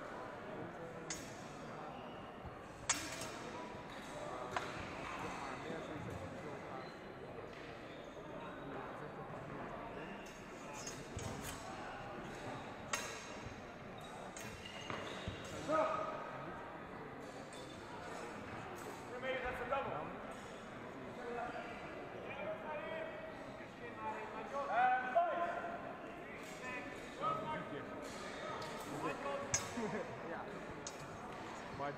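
Sword-fencing bout in a large sports hall: scattered sharp clacks and knocks from the fighters, over a steady echoing murmur of onlookers' voices, with a few louder calls.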